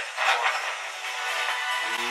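Electronic background music, with the last word of a radio message over it near the start.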